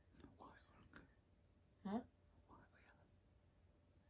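Near silence with faint whispering and one brief, soft voiced sound about two seconds in.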